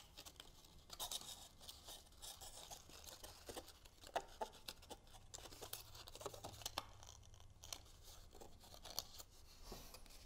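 Faint rustling and crinkling of cardstock handled in the fingers, with scattered small clicks as the paper flexes while glued tabs are pressed together.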